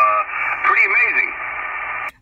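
A man's voice received over 10-meter single-sideband through a ham radio transceiver's speaker, thin and narrow like a telephone, in two short phrases. In the second half only steady receiver hiss comes through.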